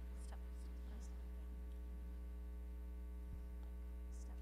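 Steady electrical mains hum with its overtones, with a few faint, soft hisses in the first second.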